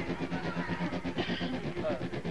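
People's voices talking, with no words the recogniser caught, over a steady low hum.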